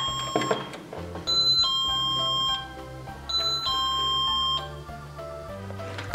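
A toy dollhouse's electronic doorbell rings a two-note ding-dong chime twice, each time a high note stepping down to a lower held note for about a second, over soft background music.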